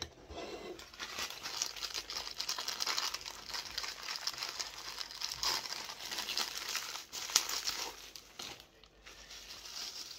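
Plastic packaging of a Funko Soda vinyl figure crinkling steadily as hands pull open its black plastic bag and unwrap the clear plastic wrap inside.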